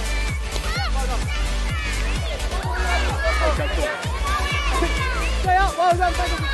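Electronic background music with a steady bass, under children and adults shouting on a football pitch.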